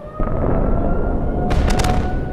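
Dramatic war sound effects over music: a rising siren-like wail, then a sudden loud explosion-like boom just after the start that rumbles on, with a burst of sharp cracks about a second and a half in.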